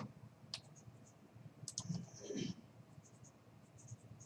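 Quiet room tone with a few sharp computer-mouse clicks, the loudest at the very start. A brief low sound with falling pitch comes about two seconds in.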